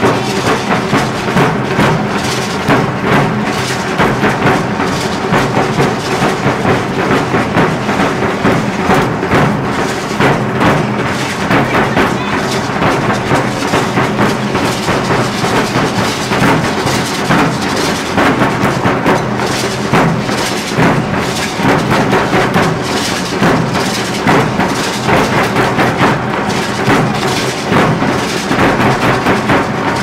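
Group of marching drums beating a steady, fast dance rhythm for a Danza Apache troupe, loud and unbroken.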